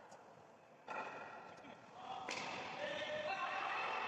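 A sharp knock, a cricket bat hitting the ball, ringing in the large empty steel cargo hold. From about two seconds in, players shout.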